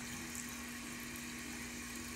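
Bathroom sink tap running steadily into the basin, with a faint steady hum under the water.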